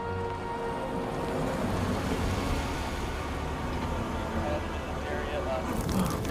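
Film score music over the sound of a car driving, a steady low rumble of engine and tyres on the road.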